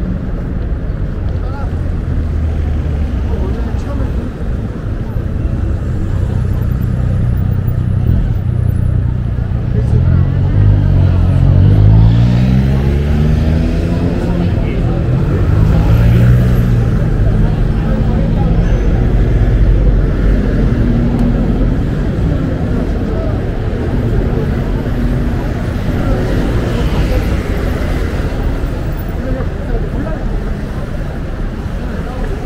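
Steady city street traffic rumbling, with a vehicle passing close by about ten seconds in, its engine note rising as it speeds up.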